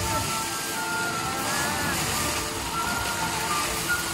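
Water pouring down from an artificial rock waterfall and churning in a concrete basin, a steady rushing, with light background music over it.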